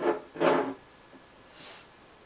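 A 12-ounce glass beer bottle set down and scraped along a wooden table top: two short rubbing scrapes in the first second. A short soft hiss follows near the end.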